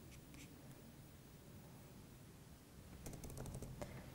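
Near silence, with a faint click or two a fraction of a second in, then faint typing on a computer keyboard from about three seconds in.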